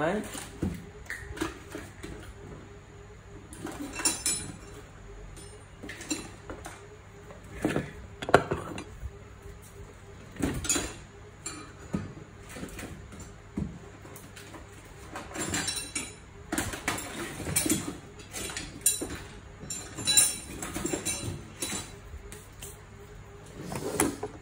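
Scattered clinks and knocks of metal parts being handled and set down on a work table while a gear reduction unit is taken apart.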